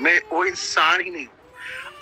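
A man's voice speaking in drawn-out, sliding tones for about a second, then a brief lull.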